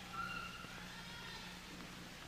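A faint, drawn-out call from the baby rhesus monkey, rising slightly then fading, over the steady hiss and hum of an old film soundtrack.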